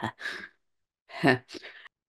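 A woman's breathy sighs and exhalations as a laugh trails off, with a short pitched vocal sound a little over a second in.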